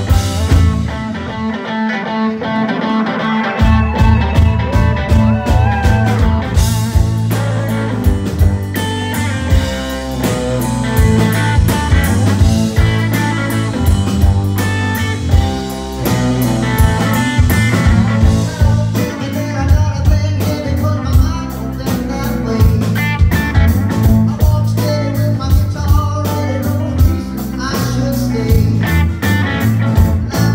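Live rock band playing electric guitars, bass guitar and drums. About a second in, the bass and drums drop out for a couple of seconds, then the full band comes back in.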